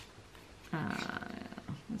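Paper sticker sheets rustling faintly as they are handled, then a long drawn-out spoken "uh" about a third of the way in and the start of another word near the end.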